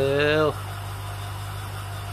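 Steady low mechanical hum of an aquarium pump running, unchanging throughout.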